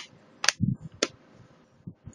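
Two sharp plastic clicks about half a second apart, with a soft knock between them, as parts around the keyboard of an HP Compaq 8510p laptop are pressed down into place.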